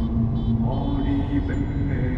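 Slow music with long held notes, stepping in pitch every half second or so, over the steady low rumble of the car on the road, heard from inside the car.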